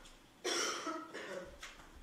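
A person coughing once, starting suddenly about half a second in and fading out, followed by a couple of fainter short throat noises.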